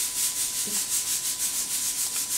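Toothbrush bristles scrubbing a dog's teeth in quick back-and-forth strokes, about six a second.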